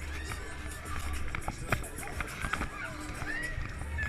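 Fairground ride in motion: ride music with a deep low rumble underneath, riders' shouts and whoops rising and falling over it, and scattered clicks and knocks.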